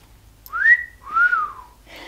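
A person whistles a two-note wolf whistle: a quick rising note, then a longer note that rises and falls away.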